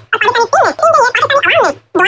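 A man's voice rapidly babbling 'agar magar' over and over, the words run together into a garbled stream.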